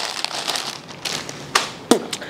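Packaging wrapper crinkling as it is handled, with scattered small clicks and one sharp click just before the end.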